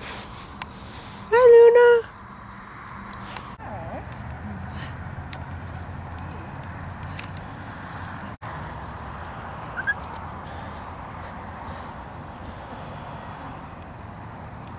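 A dog gives one short, held whine, loud against the background, about a second in. A steady hiss of background noise fills the rest.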